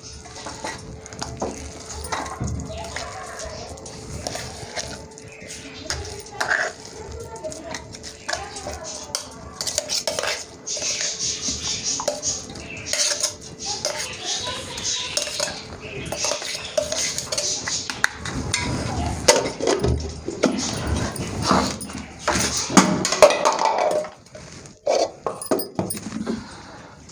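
Metal spoon scraping and clinking against a stainless-steel mixer-grinder jar and a steel plate in many irregular strokes, as ground pea filling is scraped out.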